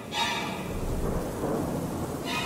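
Rolling thunder over steady rain, with a ringing tone fading out at the start.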